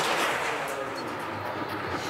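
Skeleton sled's steel runners rumbling and hissing along the ice track as it passes, a steady rush that eases slightly.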